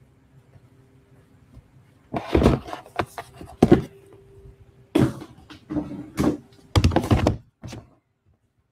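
Handling knocks and thunks as the recording camera is picked up and repositioned: a string of separate bumps starting about two seconds in, with a faint steady hum underneath.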